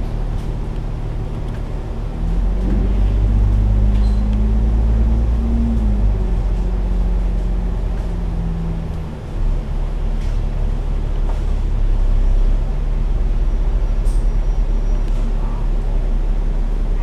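A Hong Kong double-decker bus, an Alexander Dennis Enviro500 MMC, heard on board as it drives: a steady engine and drivetrain drone. The engine note rises for a few seconds from about two seconds in and then drops, eases briefly about nine seconds in, and then pulls again.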